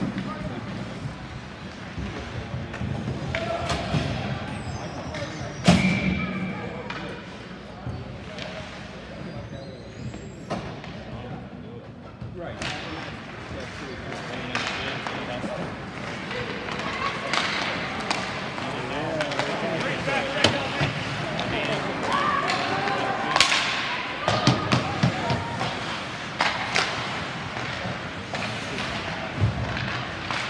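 Ice hockey play in an echoing rink: scattered sharp knocks and thuds of puck, sticks and boards, the loudest about six seconds in, over spectators' background chatter.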